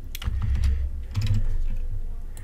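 Typing on a computer keyboard: a run of quick, irregular keystrokes over a low steady hum.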